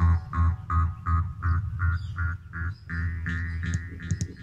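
Jaw harp played in a rhythmic trance pattern: a low drone plucked about three times a second, its twangy overtones shifting up and down from stroke to stroke.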